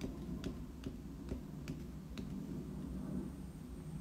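White pen tip tapping dots of snow onto watercolor paper: a series of light ticks, about five in the first couple of seconds, then fainter.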